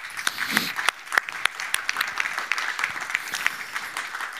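Audience applause: many people clapping steadily together.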